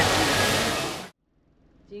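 Lamb sizzling on a cast-iron Genghis Khan (jingisukan) grill, a dense steady frying hiss with restaurant chatter behind it, fading and cutting off about a second in.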